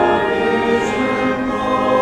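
Congregation singing a hymn together, with organ accompaniment; sustained notes that change slowly.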